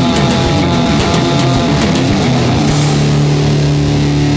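Rock band playing an instrumental passage, recorded live on a tape recorder during a studio rehearsal. About two and a half seconds in, the band settles onto a held low chord.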